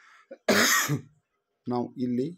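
A man clears his throat with a single short cough about half a second in, followed by a brief spoken syllable near the end.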